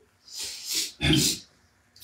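A man breathing between phrases: a hissing breath in, then a short, low nasal exhale about a second in.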